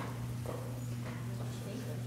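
A few soft footsteps on the stage floor over a steady low electrical hum.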